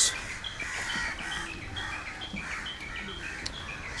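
Birds chirping: a steady run of short, high chirps, about three a second.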